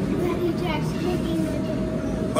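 Faint, indistinct speech over a steady background hum with a thin constant tone.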